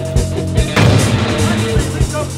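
A single explosion-like blast about three quarters of a second in, its noise dying away over the next second, laid into a rock band's music with sustained bass and keyboard tones.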